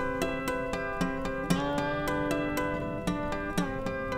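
Steel-string acoustic guitar played fingerstyle, with notes ringing and several of them sliding in pitch, most clearly about one and a half seconds in. This is the pitch shift of banjo detuner pegs being flipped between their preset stops.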